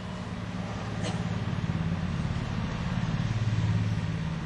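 Low, steady engine hum of a motor vehicle, growing louder toward the end and then easing off.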